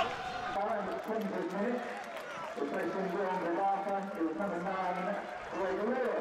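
Quiet male voices talking, well below the level of the match commentary.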